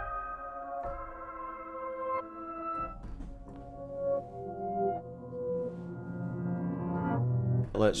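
Reversed, lo-fi-processed grand piano melody sample playing back through the Drop Designer sampler: a slow line of held notes changing every second or so, with lower notes coming in about three seconds in and growing fuller toward the end.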